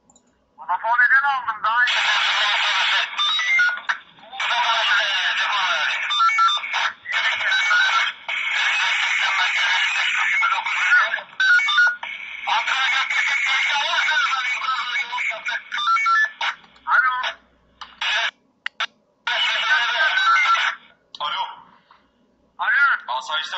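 Voices over a telephone line, talking loudly and almost without pause over one another, with a thin, phone-line sound and no low end.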